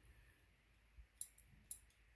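Faint clicks of an M1 Garand bayonet's release catch being worked by hand, a few in the second half. The newly fitted release is working properly.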